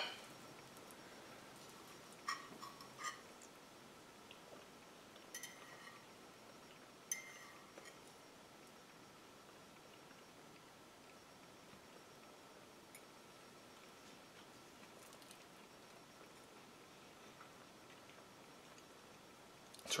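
Near silence: quiet room tone while he chews, with a few faint clicks and clinks of a fork against a plate in the first eight seconds.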